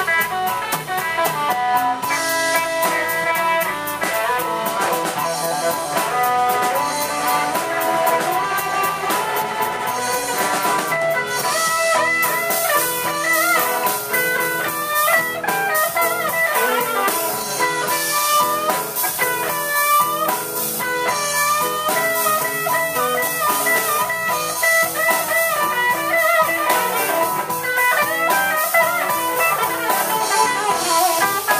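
Live blues band playing an instrumental passage: an electric guitar plays bending lead lines over a drum kit with cymbals.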